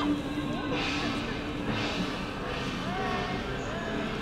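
Wooden naruko clappers rattling in short bursts about once a second, over music and crowd voices.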